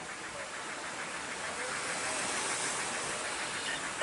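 Steady hissing background noise that swells a little towards the middle and eases off again.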